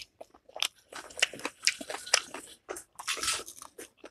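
A person chewing food, with wet smacking and clicking mouth sounds in irregular bursts, busiest around the middle and again a little after three seconds.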